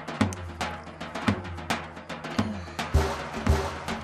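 Background drama score: drum hits over a low bass line.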